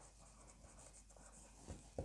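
Faint scratching of a felt-tip marker writing on a whiteboard, with a light tap near the end.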